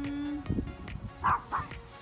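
A dog barking twice in quick succession about a second in, over background music.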